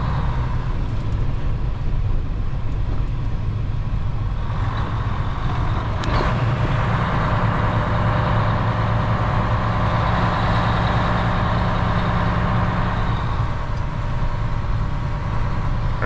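Semi truck's diesel engine running steadily while driving, heard from inside the cab, with tyre and road noise from the snow-packed ice that swells about four seconds in and eases near the end; one short click about six seconds in. No cracking is heard from the ice.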